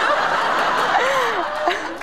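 Studio audience laughing together, the laughter easing off slightly near the end.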